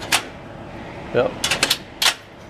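Metal clicks and clacks from a vending machine's bottle rack and lock latch as it is pulled out by hand: one sharp click near the start, then a quick run of several clicks shortly after the middle. The evaporator fan runs steadily underneath.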